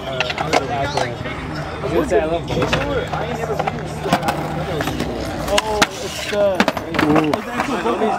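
Skateboard wheels rolling on concrete, with several sharp clacks of boards striking the ground, under people talking.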